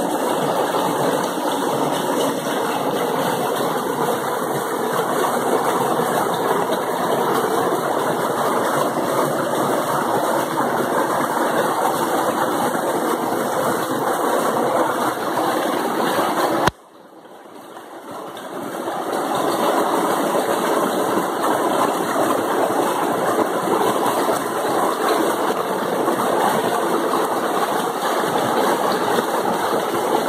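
Small mountain waterfall and stream rushing over rocks: a loud, steady rush of water. About 17 seconds in it cuts out suddenly and fades back up over a couple of seconds.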